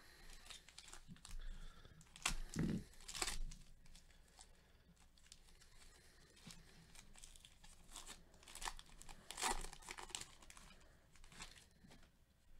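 Foil wrapper of a baseball card pack being torn open and crinkled by hand, in a run of short crackling tears, loudest about two to three seconds in and again about nine and a half seconds in.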